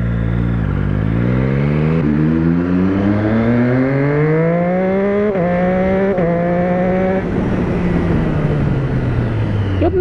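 Motorcycle engine pulling away and accelerating, its pitch climbing for about five seconds, with two quick upshifts about five and six seconds in, then the revs falling away as the rider rolls off the throttle near the end.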